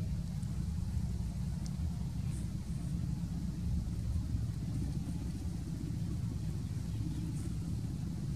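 A steady low rumble at an even level, with a few faint high ticks scattered through it.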